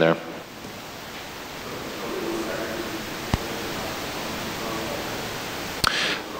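A faint, distant voice of a person asking a question away from the microphone, over a steady room hiss, with a single sharp click about three seconds in.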